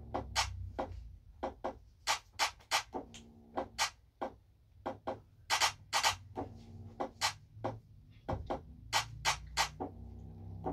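Dance music plays quietly, only its lower part coming through, under a run of loud, sharp hand claps, about three a second in uneven groups.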